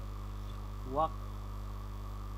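Steady low electrical mains hum, with one short spoken word about a second in.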